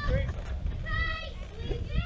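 Girls' high-pitched voices calling out on a softball field, two drawn-out shouts about a second apart, over a steady low rumble.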